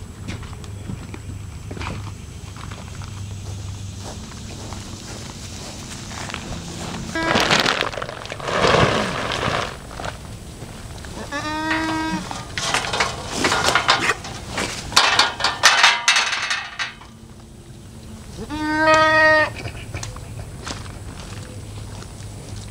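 Goat bleating twice, short pitched calls about a third and then most of the way through, with a third starting right at the end. Between them come stretches of loud rustling, scraping noise.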